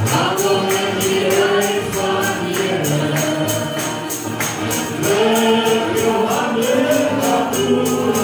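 Group of voices singing a worship song over a steady jingling percussion beat of about three to four strokes a second.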